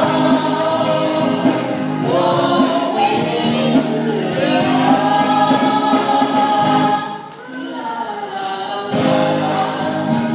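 Several voices singing together into microphones over band accompaniment, in long held notes. The music drops quieter about seven seconds in and comes back up near the end.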